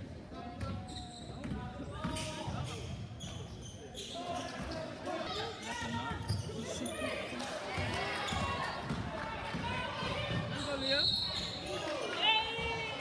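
Basketball game in a gym: the ball bouncing on the hardwood court and sneakers squeaking, with players and spectators calling out over the hall's echo.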